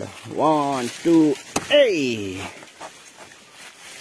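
A person's voice making three short vocal sounds that slide up and down in pitch, with a sharp click just before the third. After that there is only faint scattered rustling.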